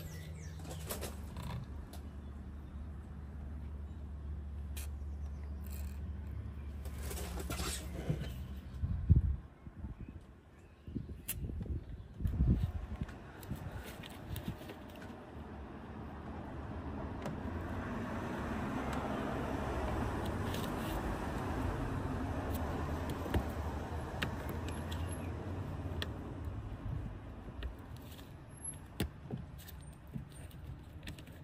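PlusGas penetrating oil sprayed from an aerosol can in a short hiss about seven seconds in, onto a seized heater-valve fixing. Sharp metal knocks follow about nine and twelve seconds in, the loudest near nine, as a spanner works the fixing, then a long rush of noise swells and fades through the second half.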